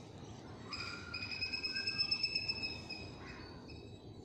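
A bird calling: one long, steady, high whistled note lasting about two seconds, with a fast flutter in its loudness, over steady low outdoor background noise.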